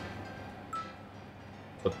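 Low steady room hum with one short, high-pitched ping about three quarters of a second in.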